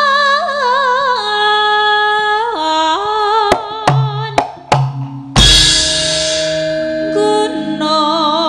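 A sinden (female Javanese gamelan singer) sings a slow phrase with wide vibrato that steps downward. About three and a half seconds in, four sharp drum strokes break in, followed a little after five seconds by a loud cymbal crash with a deep bass-drum boom. The singing resumes near the end.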